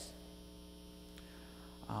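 Steady electrical mains hum in the recording, heard faintly through a pause in the speech.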